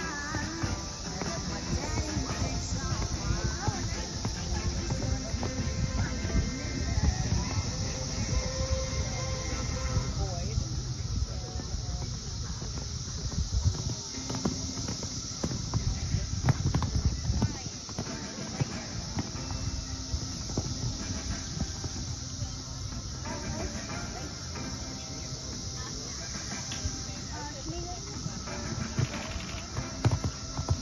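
Hoofbeats of a horse cantering and jumping on a sand arena, heaviest around the middle, under music and people's voices.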